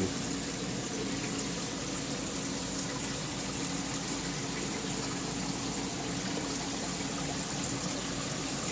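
Steady rush of moving water with a constant low hum, the running circulation of a saltwater aquarium system.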